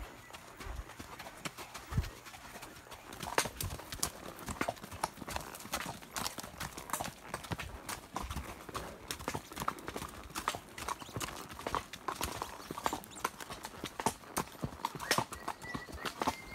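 Horses' hooves clip-clopping on a dirt track, an unbroken run of irregular hoof strikes, heard from the saddle of one of the horses.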